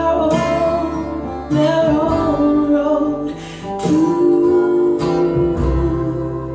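A recorded song played through Tannoy Precision 6.2 loudspeakers and heard in the room: guitar-led music with long held notes.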